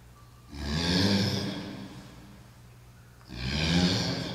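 A man breathing out hard, twice, about three seconds apart, in time with seated upward dumbbell punches; each breath swells quickly and tails off over about a second.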